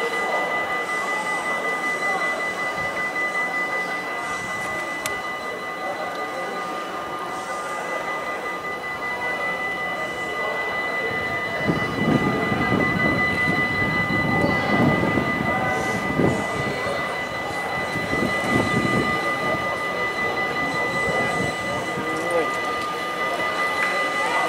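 Railway station platform ambience: a steady high-pitched whine with background noise, and voices talking indistinctly from about halfway through for several seconds.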